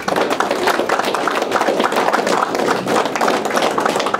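Audience applauding: a dense, steady patter of many hands clapping that begins at once and carries on through.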